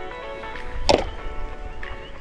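Loaded barbell with rubber bumper plates set down onto grass at the end of a deadlift: one thump about a second in, over background music.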